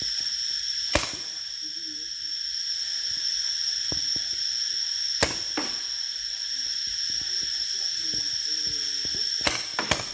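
Paintball marker firing sharp single pops: one about a second in, a few more spaced a second or more apart in the middle, then a quick burst of three near the end. Under them runs a steady high-pitched drone.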